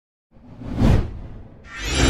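Logo-intro sound effect: a whoosh that swells and fades within the first second, then a second rising whoosh near the end that opens into a held, ringing musical chord.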